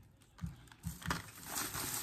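A few soft knocks as things are handled and set down, then plastic bag rustling that grows from about a second in.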